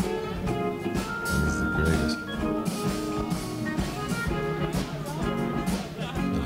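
A jazz-blues band playing, with drum kit and electric guitar over a steady beat. One note is held for about a second near the start.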